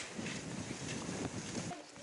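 Wind rushing over the microphone: a steady noise with no voices, which drops away sharply just before the end.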